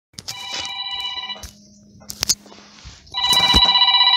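Telephone ringing twice with an electronic ring, each ring just over a second long, signalling an incoming call. A few sharp clicks fall between the two rings.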